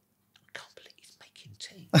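A man whispering a few words after a brief silence, quoting what someone said. Louder voice and laughter break in right at the end.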